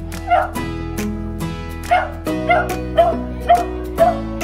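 A dog barking in short, sharp barks: one about a third of a second in, then a quick run of about five in the second half, over steady background music.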